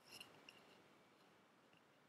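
Near silence: room tone, with two faint computer-mouse clicks about a quarter of a second apart near the start.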